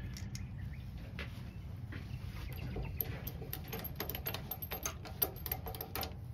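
Small clicks and ticks, growing busier from about two and a half seconds in, as a wood lathe's tailstock is wound in to press the fountain pen kit's parts together between plastic pads. A low steady hum runs underneath.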